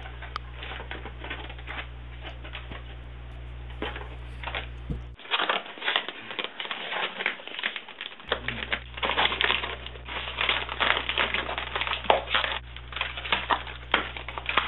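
Plastic packaging crinkling and rustling as it is handled and unwrapped, a dense run of irregular crackles that gets louder about five seconds in. A steady low hum sits underneath and drops out briefly.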